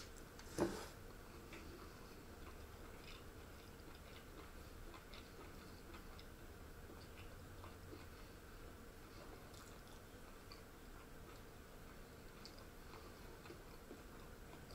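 A metal spoon clinks once against a dish about half a second in, then only faint scattered ticks and soft mouth sounds of someone chewing quietly, over a low steady room hum.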